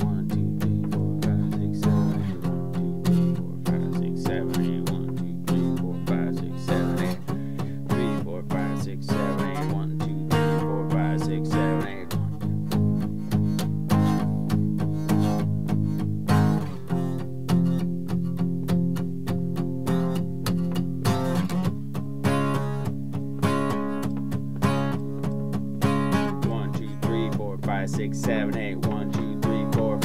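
Acoustic guitar strummed with a pick in a steady even rhythm, changing chord every few seconds. It runs through a progression of G sharp, F minor, C sharp major and D sharp major, with C sharp major turning to C sharp minor.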